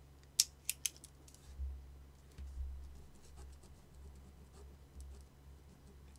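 Three sharp clicks in quick succession in the first second, then a few faint low thumps.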